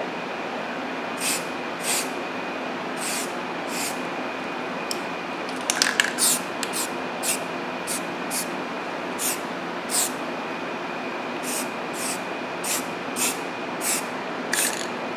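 Aerosol spray-paint can spraying in many short hissing puffs, spaced irregularly, while paint is sprayed in test strokes.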